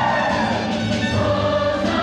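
A choir singing with instrumental accompaniment.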